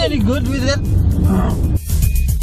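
Engine and road noise inside a moving car, under a person's voice and background music.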